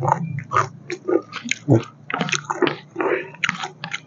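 A person chewing a mouthful of pork curry and rice, with wet chewing and lip smacking in a quick, irregular run of smacks and clicks.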